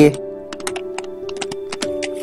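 Computer keyboard typing: a quick run of keystrokes as a word is typed, over steady background music.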